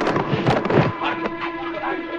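Judo practice: bodies thudding onto the mat and short shouts, packed into the first second, then quieter. A steady tone runs underneath throughout.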